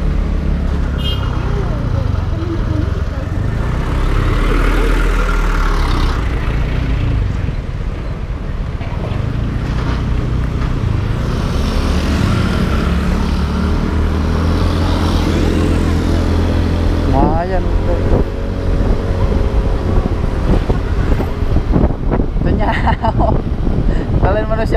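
Two-stroke motorcycle engine running under way while riding, its note rising and falling with the throttle, over wind noise on the microphone.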